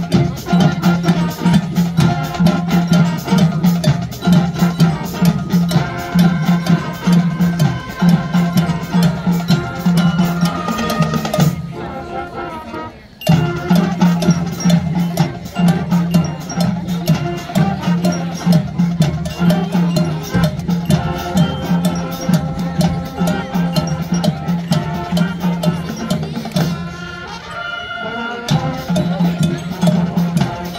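High school marching band playing its field show: brass and woodwinds over drums and front-ensemble percussion with a steady beat. The band drops to a brief quiet passage about twelve seconds in, then comes back in at full volume, and eases off again for a moment near the end.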